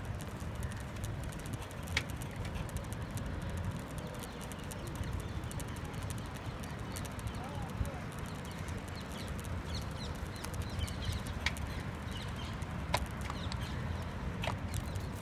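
Outdoor park ambience recorded while walking: a steady low rumble on the microphone, footsteps on paving, distant voices, and short bird chirps in the second half.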